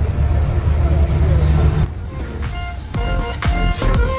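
Chicken bus engine rumbling, heard from inside the passenger cabin, for about the first two seconds; then the rumble drops away and background music with a steady beat comes in.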